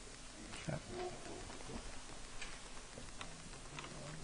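Faint room noise with a few small scattered clicks and knocks, and a brief murmur of a distant voice about a second in.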